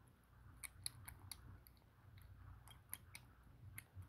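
Kitten eating wet cat food from a bowl: faint, irregular small wet clicks and smacks of chewing and licking.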